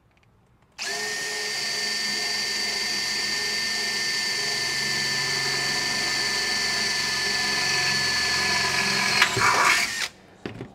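Makita cordless drill running steadily as its twist bit grinds into a furnace heat-exchanger tube, a steady high whine that starts about a second in. Near the end the sound turns rougher and louder, then stops.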